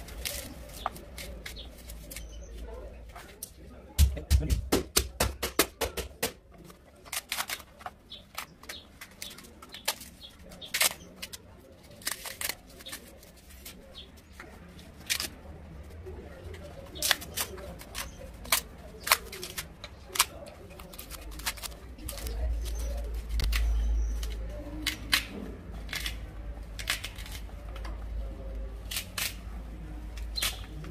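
Dry baobab fruit pulp and fibres pulled and broken apart by hand, giving irregular sharp crackles and snaps as the chalky chunks break off and drop into a plastic tray, with a quick run of snaps about four seconds in.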